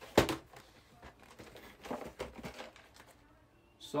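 Cardboard card-collection boxes being handled: a sharp knock just after the start, then faint rustling and light taps around two seconds in.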